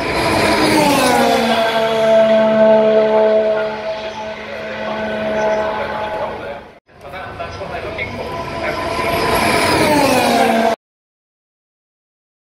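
Formula 1 cars' 1.6-litre turbocharged V6 hybrid engines passing on track, loud, their pitch dropping as they slow and shift down for a corner. A second car comes through after a brief break just past halfway, its pitch dropping near the end. The sound cuts off suddenly about three-quarters of the way in.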